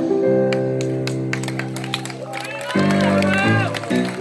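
Live band playing between sung lines: long held keyboard chords over drum hits, the chord changing about three-quarters of the way through.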